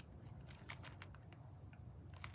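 Faint, sparse crinkles and ticks from a small clear plastic zip bag of miniature cookies being handled between the fingers.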